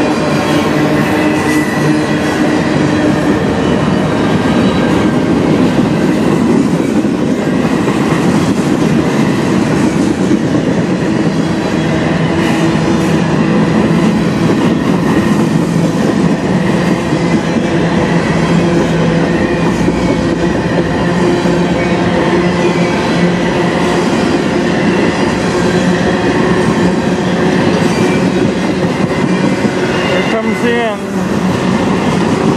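Freight cars of a mixed manifest train rolling past close by: a steady loud rumble and clatter of steel wheels on the rails, with a few steady whining tones above it.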